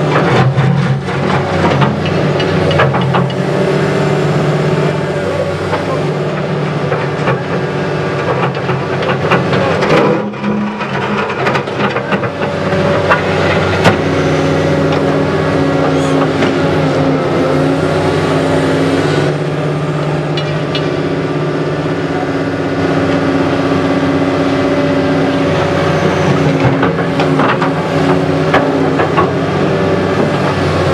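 Caterpillar 321 hydraulic excavator's diesel engine running steadily under working load, its note shifting a little as the hydraulics move the boom, with scattered scrapes and knocks as the bucket drags through soil and stones.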